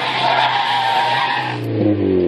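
Mazda MX-5 Miata drifting: its tyres squeal while its four-cylinder engine is held at steady revs. Near the end the tyre squeal stops and the engine carries on alone.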